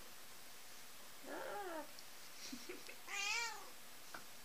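A black cat meowing twice while being held, the second meow louder and higher.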